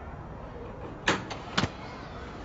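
Knocking on a door: a few sharp knocks, the loudest a quick double knock about a second and a half in, over a faint outdoor background.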